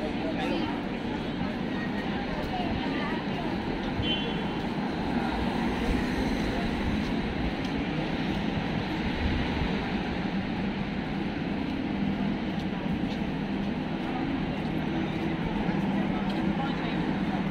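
Busy city-street ambience: passers-by talking and steady road traffic, with no pauses.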